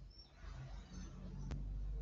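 Background noise over a video call's open microphone: a low rumble that grows louder toward the end, a single sharp click about one and a half seconds in, and a few faint, short, high chirps.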